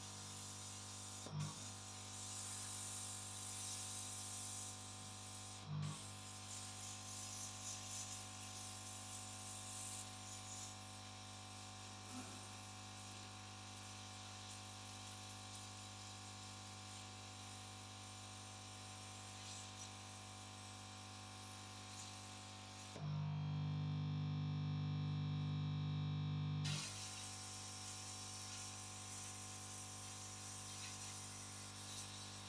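Air pump of an EEG electrode glue dryer running with a steady buzzing hum and the hiss of air from the nozzle held against the scalp. Two light clicks come in the first few seconds, and for about four seconds near the end the hum turns louder and deeper while the hiss drops out.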